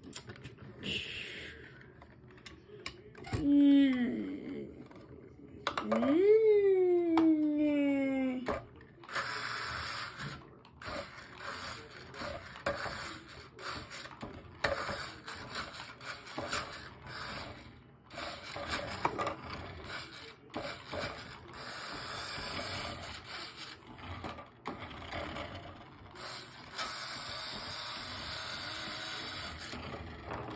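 A few rising and falling vocal sounds in the first several seconds, then from about nine seconds in a continuous, uneven whirring and grinding from a toy RC car's small electric motor and gears as it drives.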